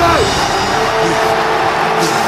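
Movie soundtrack: a low held music tone over steady background noise, just after a fight commentator's voice trails off.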